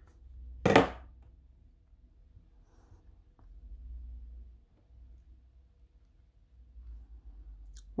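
Handheld phone being moved about close to the face: low, uneven handling rumble with a few faint ticks, and one short, sharp noise just under a second in.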